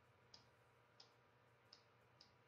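Near silence with three faint, evenly spaced clicks, about two-thirds of a second apart: a stylus tapping on a pressure-sensitive drawing tablet.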